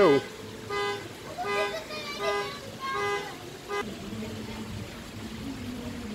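A vehicle horn tooting in short, evenly spaced blasts, about five of them in the first four seconds, a pattern typical of a car alarm. A steady low hum follows.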